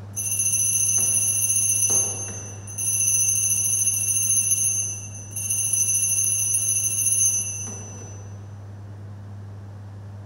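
Altar bells shaken three times, each ring lasting about two seconds, the third fading out about eight seconds in. They mark the elevation of the consecrated host at Mass.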